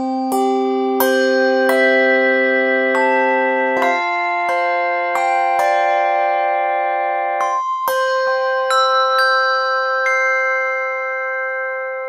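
Sampled handbells struck by their clappers, played one note after another from a keyboard: about two strikes a second, each note ringing on and overlapping the next, so they build into sustained chords.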